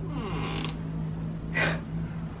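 Closet door hinges creaking as the double doors swing open, with two short brushing noises and a low steady hum underneath.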